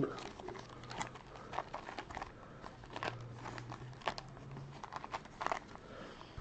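Plastic shrink wrap on a sealed Prizm basketball card box crinkling as it is handled: a run of faint, irregular crackles.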